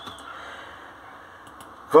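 A faint breathy hiss from a man breathing close to the microphone, slowly fading away. His voice starts speaking again near the end.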